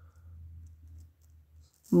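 A quiet pause filled by a low, steady background hum that stops shortly before the end, with a few faint clicks; speech begins right at the end.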